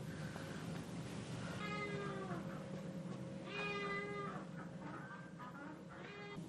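An animal's drawn-out call, heard twice about two seconds apart, each lasting under a second at a steady pitch, with a third starting at the very end.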